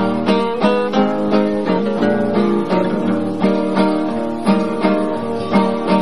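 Acoustic guitars playing an instrumental passage of a song: a picked melody over strummed chords, about three notes a second.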